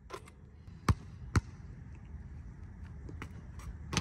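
A basketball hitting the hoop and bouncing on the court: two sharp thuds about half a second apart, the loudest sounds here, then a few lighter knocks near the end.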